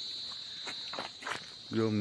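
Forest insects making a steady high-pitched drone that weakens near the end.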